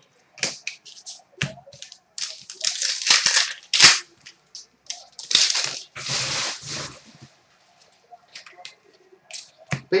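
Trading cards handled by hand: a run of short sharp clicks and flicks, with several longer papery swishes as the cards are slid against one another and set down.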